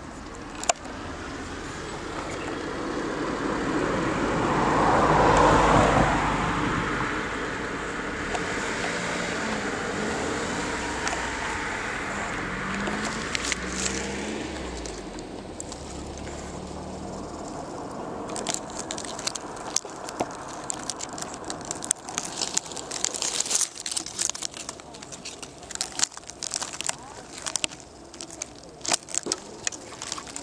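A vehicle passing, its sound swelling to its loudest about five seconds in and fading away over the next ten seconds. From about eighteen seconds on there is irregular crackling and snapping of dry leaves and twigs being disturbed.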